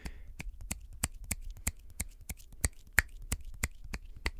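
Fingers snapping in a steady rhythm, about three sharp snaps a second, picked up off-axis from the side of a shotgun microphone.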